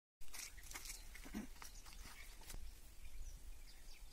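Faint outdoor background with a few short, distant animal calls and a brief knock about two and a half seconds in, over a steady low rumble.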